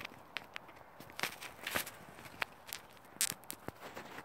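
Footsteps on grass: irregular soft scuffs and clicks, a few a second.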